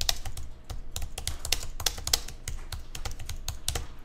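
Computer keyboard keys tapped in quick, uneven succession as a line of text is typed.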